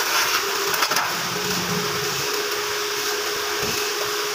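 A machine running steadily with a hissing noise. A steady hum joins it about a second and a half in.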